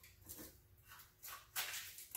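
Faint, short rustles from a drink-mix packet being handled and emptied over a coffee can of grain-and-pellet stock feed, a little louder in the second second.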